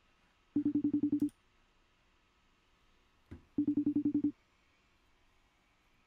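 FaceTime outgoing call ringing on a Mac: a fast trilling ring tone, each ring about three-quarters of a second long, sounding twice about three seconds apart while the call waits to be answered.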